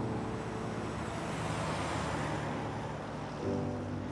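A bus driving past, its road noise swelling through the middle and fading again, over sustained music notes that drop out while it passes and return near the end.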